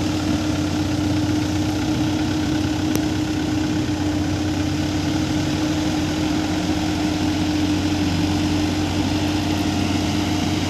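Light dump truck's diesel engine running steadily as its hydraulic hoist raises the loaded tipper bed, with a constant low hum and a steady tone above it.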